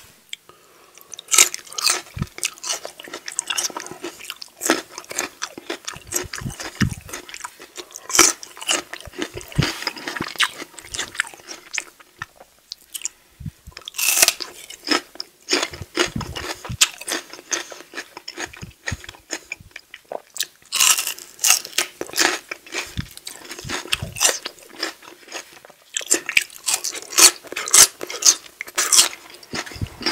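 Close-up crunching and chewing of raw baby carrots and celery sticks, a rapid run of sharp crisp crunches that comes in clusters with short pauses between bites.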